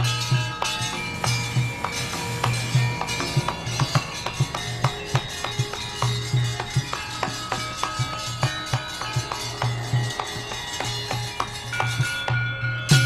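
Gamelan ensemble playing: a steady run of struck, ringing metal notes over repeated low drum strokes.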